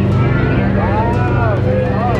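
Loud scare-zone soundscape: a steady low drone with a few swooping tones that rise and fall over it, and crowd voices mixed in.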